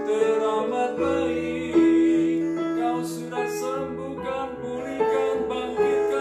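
Keyboard playing slow, sustained worship chords that change about once a second, each struck and then fading.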